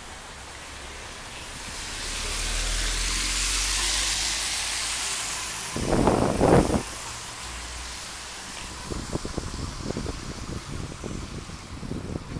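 A car passing along the street, its tyre and engine noise swelling and then fading over a few seconds. About six seconds in there is a short loud rumbling buffet, followed toward the end by a run of quick, irregular soft knocks.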